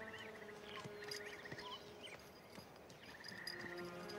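Faint woodland ambience: short, rapid animal trills repeating a few times, with scattered small chirps over a low steady hum.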